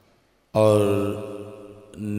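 Speech only: after half a second of silence, a man's voice draws out a single word, held on one pitch for over a second and fading away.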